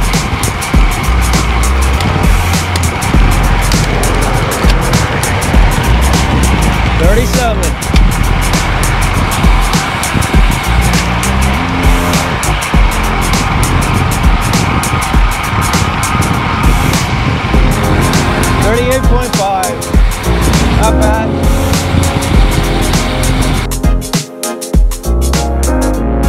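Loud wind rushing and buffeting over a cyclist's wireless clip-on microphone at around 35 mph on a road bike, full of crackling gusts.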